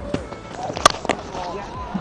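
Cricket bat striking the ball: one sharp crack a little under a second in, over faint background voices.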